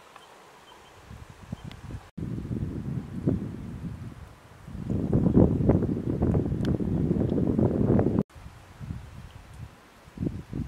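Wind buffeting the camera microphone outdoors, a gusty low rumble that swells loudest through the middle and breaks off abruptly twice.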